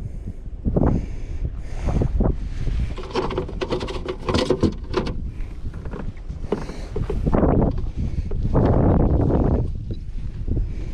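Wind buffeting the camera microphone in loud, uneven gusts, with a run of small clicks and knocks from gear being handled in a plastic kayak about three to five seconds in.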